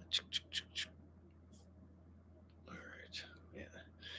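Faint whispering under the breath, with four quick, sharp hissy ticks about a fifth of a second apart in the first second and a soft breathy murmur near the end.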